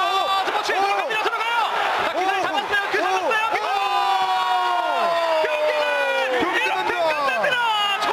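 Men yelling excitedly in rapid rising-and-falling shouts, then one long drawn-out shout about halfway through, over a cheering crowd, as a fight is stopped.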